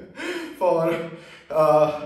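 A man gasping for breath aloud, in three breathy vocal out-breaths, winded after a long trampoline workout.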